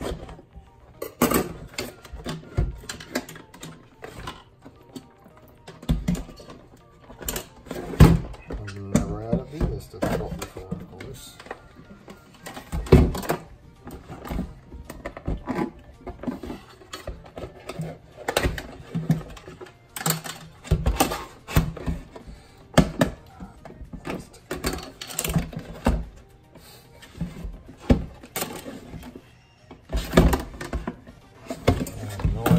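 Irregular knocks and clatter of a plastic tub being handled and turned in a stainless steel sink, with a knife working around its edges, to free a hardened block of beeswax stuck tight to the plastic. Music plays underneath.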